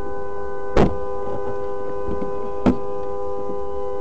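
A two-tone car horn sounding steadily without a break after a crash. Two short knocks come about a second in and at just under three seconds.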